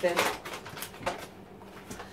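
Paper bag of self-raising flour rustling and crinkling as it is opened and tipped over a mixing bowl, with a few short crackles in the first second or so.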